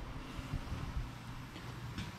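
Faint low rumble with a few soft bumps, the handling noise of a handheld camera being carried and moved.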